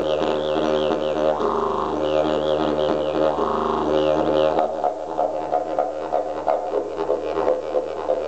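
Termite-hollowed bloodwood eucalyptus didgeridoo playing a continuous low drone with wavering, mouth-shaped overtones. About halfway through, the playing changes to a faster pulsing rhythm.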